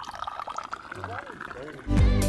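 Tea poured in a long stream from a raised metal teapot into a glass. The pitch of the pour rises slowly as the glass fills. Faint voices are in the background, and music starts near the end.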